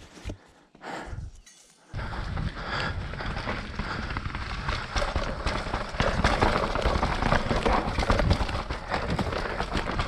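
Mountain bike rolling down rocky, rooty singletrack: a steady rough rumble of tyres on dirt and rock, full of small knocks and rattles, starting about two seconds in after a quiet start.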